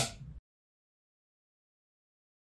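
Dead silence: the sound track drops out completely just after the tail of a spoken word.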